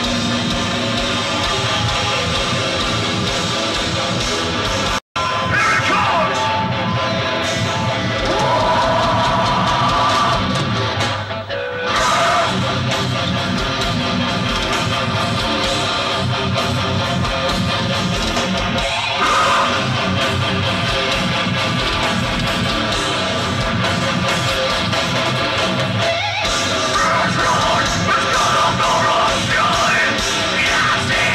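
Metalcore band playing live through a festival PA, heard from within the crowd: heavy distorted electric guitars, pounding drums and shouted vocals. The sound cuts out for an instant about five seconds in.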